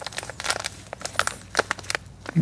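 A thin black plastic seedling cell tray crinkling and crackling, with soil rustling, as gloved fingers squeeze and work a seedling plug out of its cell. It comes as a run of irregular small clicks.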